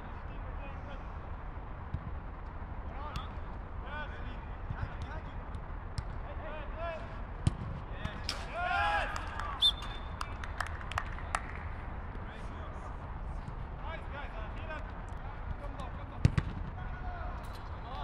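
Players shouting and calling to each other during a football game, with a few sharp kicks of the ball, the loudest near the middle and near the end, over a steady low background rumble.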